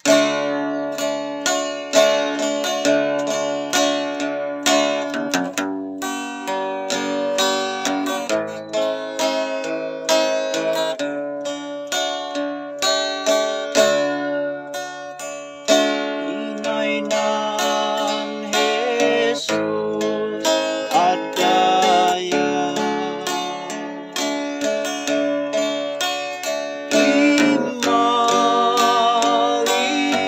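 Acoustic guitar playing a melodic intro, its notes picked in quick succession, starting abruptly.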